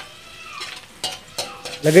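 Chopped onion, garlic, ginger and chili sizzling softly in melted butter in an aluminium wok, with a metal spoon stirring and clicking against the pan a few times around the middle.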